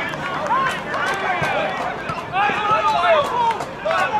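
Several voices shouting at once on and around a football pitch, players and spectators calling out during a goalmouth scramble, swelling to a louder burst about two and a half seconds in. A few dull knocks sound under the shouting.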